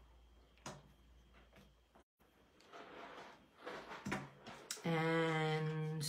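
Light clicks and rubbing as a rubber stamp and ink pad are handled, then a woman hums one held note for about a second near the end.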